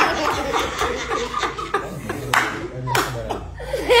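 A small group laughing and chuckling together among voices, with a few hand claps.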